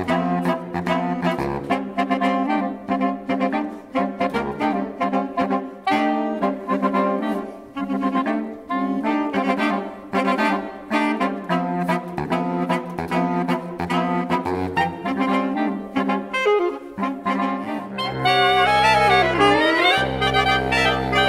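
Saxophone quartet of soprano, alto, tenor and baritone saxophones playing live: a quick passage of short, detached notes. About eighteen seconds in, it changes to louder held low chords with a falling glide in the upper voice.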